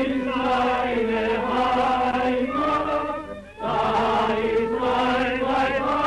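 A choir singing slow, held notes in harmony, with a short break between phrases about halfway through.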